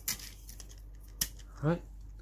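Small hard parts of a Mini 4WD model car kit clicking as a plate and screw are handled against the chassis: a short scraping click at the start and one sharp tick just over a second in.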